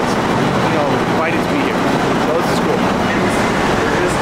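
Warehouse conveyor system running: a steady, dense mechanical rumble and rattle of rollers and belts.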